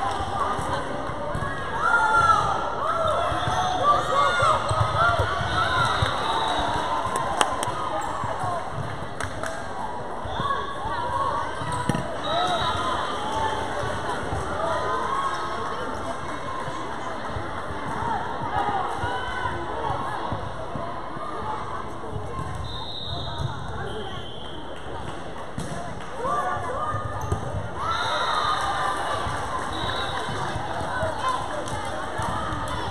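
Indoor volleyball gym during play: many girls' and spectators' voices calling out over one another, with the occasional sharp smack of the volleyball being hit or bouncing on the hardwood court, all echoing in the large hall.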